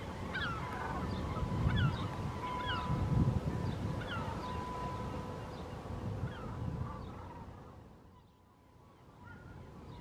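Birds calling: many short, falling calls repeating irregularly and overlapping, over a low rumbling noise. The calls and the rumble fade away near the end.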